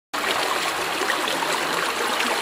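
Shallow stream water running over rocks, a steady rushing trickle.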